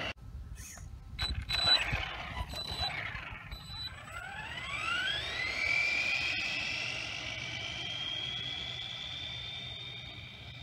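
Brushless motor of an ARRMA Senton 3S BLX RC truck, running on a 2S LiPo. After a few short blips and clicks, its whine rises steeply in pitch about four seconds in as the truck accelerates away. It then holds a high, steady whine at speed, slowly fading.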